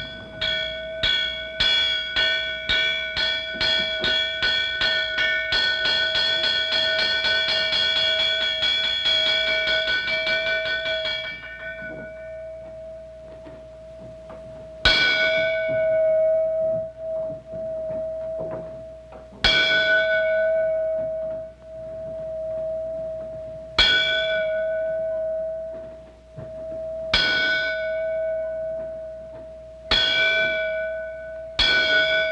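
A temple bell struck with a mallet in a Zen monastery. It starts with a quick run of strikes, two or three a second, for about eleven seconds, then gives single strikes every three to five seconds, its one tone ringing on between them.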